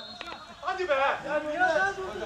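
A man's voice talking, the words not made out, after a short lull.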